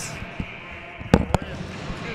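Two sharp knocks, about a fifth of a second apart, over the steady background noise of a hockey arena.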